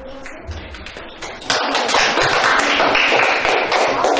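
A classroom of students clapping. The applause starts suddenly about a second and a half in and stays loud, a dense patter of hand claps.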